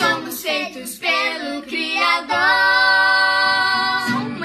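A young woman and two children singing together: short phrases that slide up and down in pitch, then one long held note from about halfway through.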